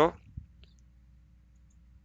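A pen tip tapping once on paper while writing, about half a second in, over a faint low hum.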